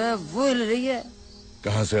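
A pitched, voice-like sound wavering quickly up and down for about a second, then a man starts to speak.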